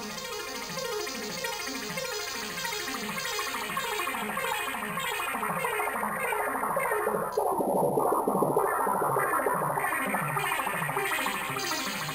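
Two pre-made arpeggio loops playing back in sequence, a steady repeating pattern of notes; about halfway through the first loop gives way to the second, whose treble dulls and then comes back. The tempo is slower than the producer wants: "not fast enough".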